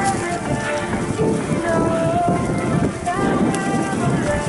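Mountain bike riding fast over a trail covered in dry leaves: a steady rush of tyre noise, leaf crunch, bike rattle and wind on the microphone, with music playing over it.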